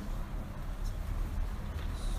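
Steady low hum of the recording's background noise, with faint room noise above it and no speech.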